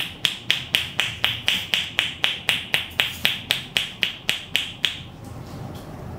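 Percussive massage with the palms pressed together and the fingers loose, striking the client in a fast, even rhythm of hollow clapping pops, about four a second. It stops about five seconds in.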